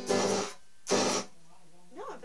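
Electric guitar strummed twice through an amp, each chord short and harsh with a hissy edge, and a low steady hum between the strums. The player blames the rough sound on her guitar cord or a loose connection.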